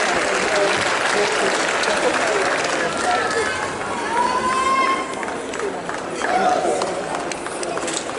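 Crowd of spectators calling out and cheering, many voices overlapping, as runners come in to the finish; it eases off a little after about five seconds.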